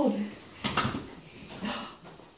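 A metal pet playpen rattling briefly as a toddler's hand grabs its bars, a short clatter under a second in. A brief, faint vocal sound follows near the end.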